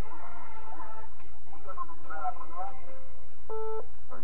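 Faint voices and music coming over a telephone line, under a steady low hum, with a short single beep near the end.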